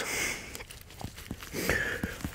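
Hands handling a flat schist stone and the soil around it on the forest floor: a few light scrapes and clicks of rock, earth and twigs.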